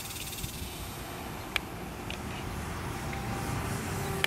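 Faint steady hum of a Dynam Cub RC model plane's electric motor and propeller flying overhead, over a background hiss of outdoor noise; the motor tone grows clearer near the end. One sharp click about one and a half seconds in.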